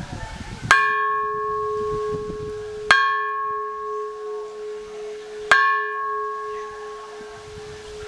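Hanging bronze bell struck three times with a wooden striker, a couple of seconds apart. Each strike rings on with a steady low tone, while the higher tones above it die away sooner.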